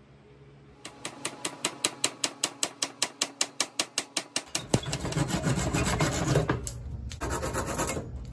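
A hand tool scraping wood in rapid, even back-and-forth strokes, about six a second, from about a second in. About halfway through the strokes merge into a denser, continuous scraping, with a short break near the end.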